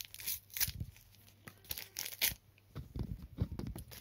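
Trading-card pack wrapper being torn open by hand, with irregular tearing and crinkling in several short bursts.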